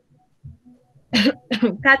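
About a second of near silence, then a short cough and the start of speech.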